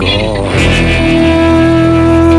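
Instrumental passage of a rock song with guitar. About halfway through, a long held note comes in and sustains over the band.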